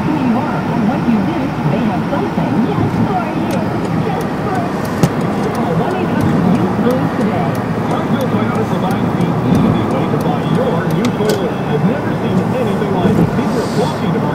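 Indistinct chatter of several overlapping voices over the steady noise of a moving road vehicle. A few sharp clicks stand out, one of them about five seconds in.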